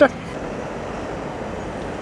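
Steady road traffic noise from cars moving around a town roundabout, an even hum with no distinct events.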